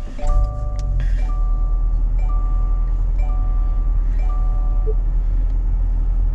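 2020 Subaru Outback's 2.5-litre flat-four engine starting with a push-button start a moment in, then idling with a steady low rumble. Over it a dashboard warning chime sounds about once a second, five times, stopping about five seconds in.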